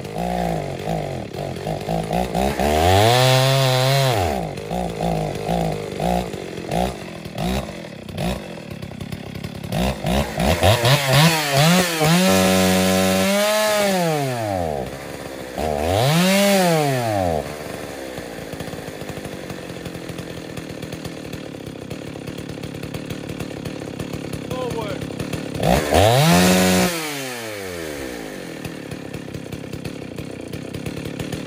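Ported Dolmar 116si two-stroke chainsaw with a 25-inch bar, opened up several times: each time the revs climb and then fall away instead of holding. Between the blips it runs at a ragged, lower idle. It idles fine but won't hold full throttle, which the owner puts down to dirt in the carburettor.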